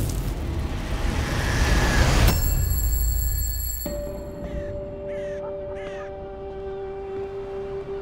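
Trailer sound design: a loud, deep rumbling swell that cuts off about two seconds in, followed by a held music drone. Over the drone a crow caws three times, a little past the middle.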